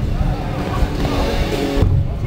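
BMX bike tyres rolling over a skatepark's ramps and floor in a low, steady rumble, in a hall with voices and music.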